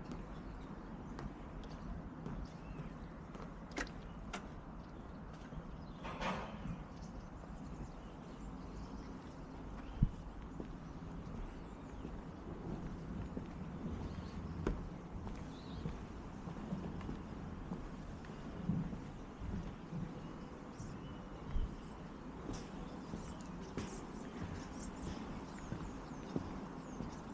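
Footsteps on weathered wooden boardwalk planks, irregular knocks and creaks, over a steady low background rumble. One sharp knock about ten seconds in is the loudest sound.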